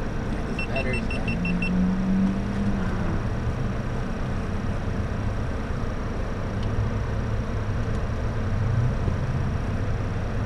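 Car engine idling with a steady low rumble. About half a second in, a quick run of about seven short high-pitched beeps.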